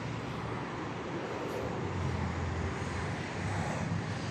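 Steady outdoor street background with a low hum of distant traffic, no distinct events.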